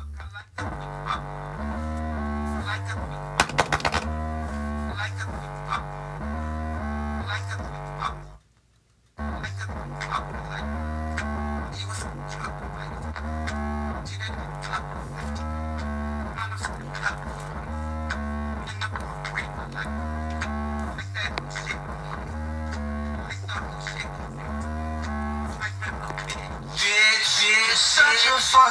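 A bare Dayton Audio woofer driver playing a bass-heavy music track with a repeating bass line, pushed hard. The music cuts out briefly about eight seconds in, and a louder burst of noise comes near the end.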